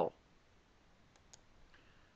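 A man's spoken word trails off at the start, then quiet room tone with a single faint click a little over a second in, followed by a few fainter ticks.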